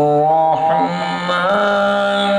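A man's voice chanting a devotional recitation in long, drawn-out held notes, amplified through a microphone. The pitch steps up about one and a half seconds in.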